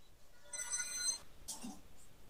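A faint, high-pitched electronic ringing tone lasting under a second, starting about half a second in.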